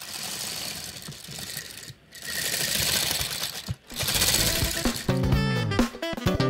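Plastic brick-built tank tracks rattling over their rollers as a COBI M60 Patton building-block model is pushed across a table, in three runs of about a second and a half each. Background music comes in about five seconds in.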